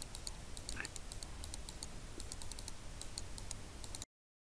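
Faint, irregular light clicks, several a second, over a low steady hum, cutting off abruptly at the end.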